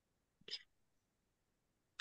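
Near silence, broken once about half a second in by a very short, soft, breathy voice sound, like a whisper or an intake of breath.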